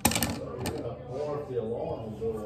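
A quick clatter of sharp clicks and knocks at the very start, with another click a little over half a second in, followed by low voices.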